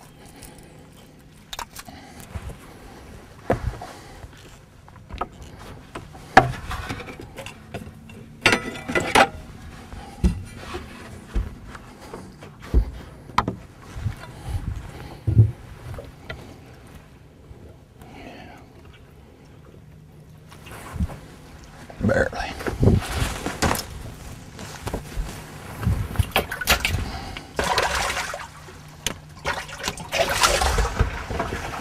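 Scattered knocks and thumps of a caught bass being handled and stowed in a bass boat's livewell, with longer, louder noisy stretches in the last third.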